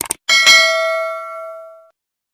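Subscribe-button sound effect: two quick mouse clicks, then a bell notification chime struck twice in quick succession that rings and fades over about a second and a half.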